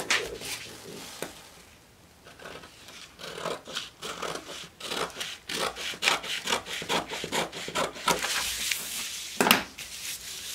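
Scissors cutting through stiff brown pattern paper: a run of crisp, irregular snips that starts about two seconds in. Near the end the paper rustles as it is shifted and moved, with one louder crackle of paper just before it stops.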